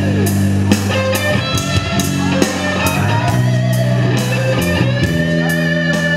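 Live rock band instrumental break: an electric guitar plays a lead line of sustained notes with pitch bends, over electric bass and a steady drum beat.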